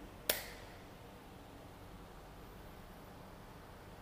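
A single sharp click about a third of a second in as a finger presses the rubber dust cover of a motorcycle's handlebar USB charging port shut, followed by faint room tone.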